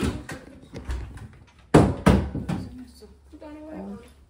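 Front door of a house being opened, with a sharp thump a little under two seconds in, amid short bursts of voices.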